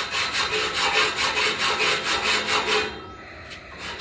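A saw cutting through a stainless steel railing tube, with rasping back-and-forth strokes about three a second. The strokes stop just before three seconds in.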